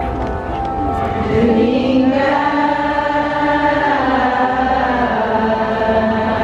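A crowd singing together in unison, with long held notes that glide slowly in pitch and a new, louder phrase beginning about two seconds in.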